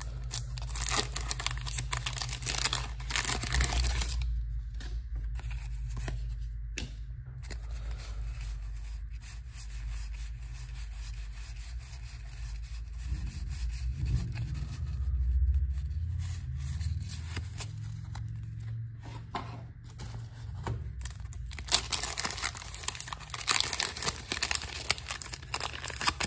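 Wax paper wrapper of a 1987 Donruss baseball card pack being torn open and crinkled, in loud crackly bursts at the start and again near the end. In between come softer sounds of the cards being handled and thumbed through.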